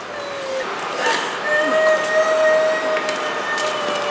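A young woman wailing in distress: one short cry, then a long, drawn-out held wail.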